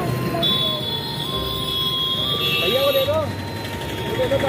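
Street traffic noise with voices in the background, and a long steady high-pitched tone from just after the start to about three seconds in.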